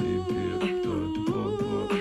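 Beatbox performance: a hummed melody line, held and stepping down about a second in before rising back, over a steady beat of vocal kick and snare sounds.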